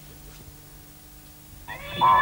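A steady low hum, then near the end a television cartoon's sound comes in loudly with a wavering cat-like yowl from the cartoon cat.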